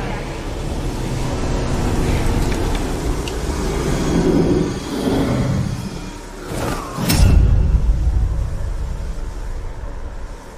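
Film sound effects of a rumbling, whooshing din, with a loud boom about seven seconds in that rumbles on for a couple of seconds before fading.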